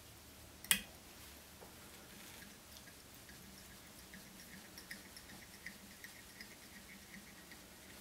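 Small metal fly-tying tools being handled: one sharp click under a second in, then faint, irregular light ticking.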